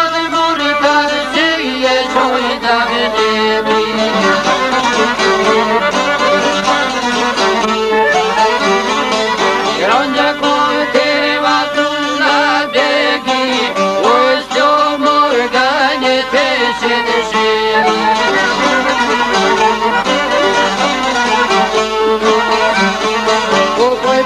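Traditional Albanian folk music playing steadily, a dense melody of wavering, ornamented notes that sounds like bowed strings.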